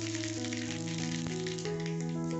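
Background music of held keyboard notes over a steady sizzle and faint crackle of mustard seeds spluttering in hot oil in a kadai.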